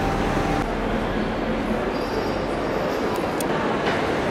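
Steady rumbling noise, even throughout, with a faint hum and a few light clicks, of the kind heard riding rail transport.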